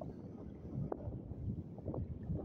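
Wind buffeting the phone's microphone: an uneven low rumble.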